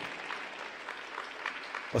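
Audience applauding, fairly faint clapping in an arena, heard as an even hiss of many scattered claps.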